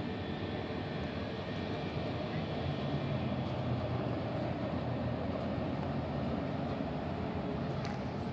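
Steady low outdoor rumble with a gentle swell partway through and no distinct events.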